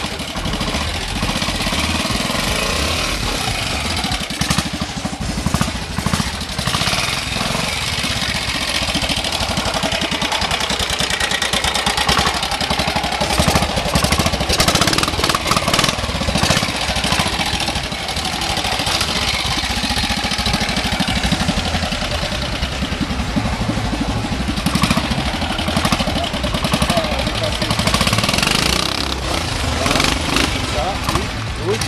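Trial motorcycle engine running at low speed over rough ground, its note rising and falling in short surges with the throttle.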